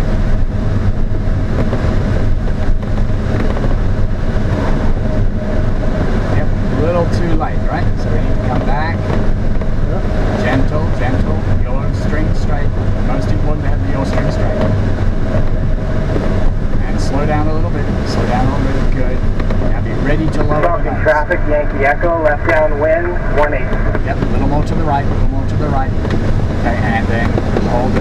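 Steady rush of airflow inside the cockpit of an ASK 21 glider, an unpowered two-seat sailplane, on final approach, with no engine sound.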